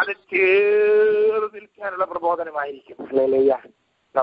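A man singing over a telephone line, so the sound is narrow: one long held note, then shorter phrases.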